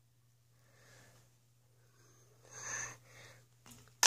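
Faint breathy sounds from a person, the clearest a short gasp or exhale about two and a half seconds in, over a low steady hum.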